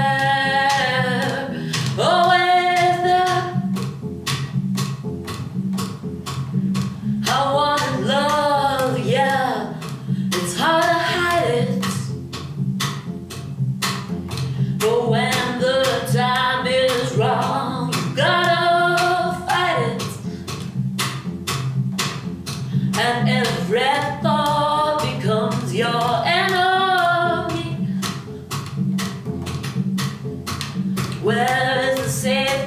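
Solo double bass played in a steady plucked rhythm with sharp percussive string clicks, under a woman singing long phrases that come and go.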